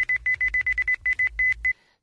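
A run of quick electronic beeps at one high pitch, in an irregular, telegraph-like pattern over a low rumble, played on air as a radio sound effect; it cuts off shortly before the end.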